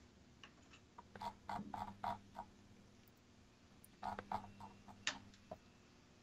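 Faint computer keyboard typing in two short bursts of a few keystrokes each, about a second in and again about four seconds in.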